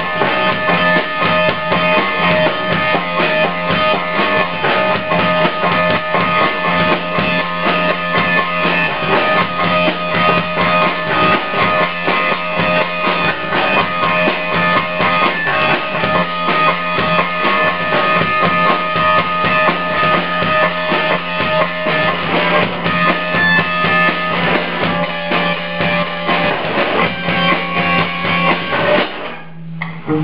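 A live rock band plays loudly: electric guitar over a drum kit, dense and continuous, with a sustained low droning note. The music cuts off about a second before the end.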